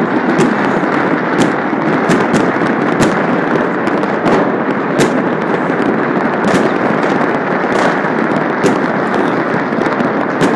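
Many distant fireworks and firecrackers going off at once across the city: a continuous dense rumble of overlapping bangs, with sharper cracks standing out irregularly, about one or two a second.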